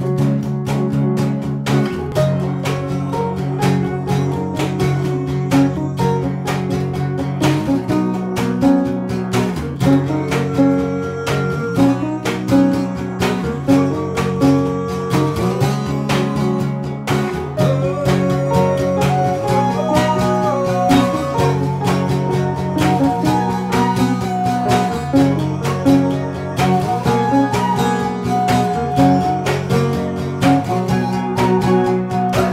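A small band playing an instrumental jam: an archtop guitar strummed and picked over sustained low keyboard chords that change every couple of seconds. A higher melody line comes in during the second half.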